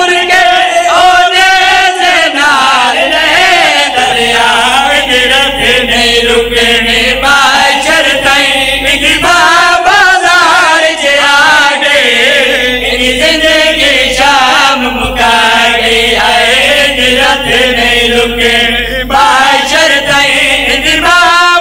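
Several men chanting a noha, a Shia mourning lament, together into microphones over a loud PA system, their voices held and wavering in pitch without a break. A low electrical hum runs underneath from about four seconds in and drops out now and then.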